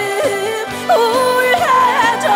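A woman singing a Korean trot song live into a handheld microphone over instrumental backing. About a second in, her voice steps up to a higher, louder held note.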